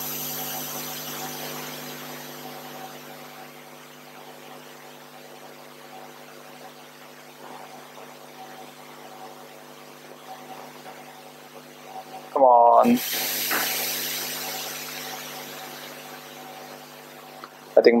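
Steady background hum made of several fixed low tones with a faint high whine above them. About twelve seconds in there is a short spoken sound, followed by a brief hiss that fades away.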